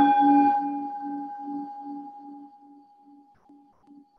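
A meditation bell struck once, ringing with a slow wavering pulse and dying away over about three seconds.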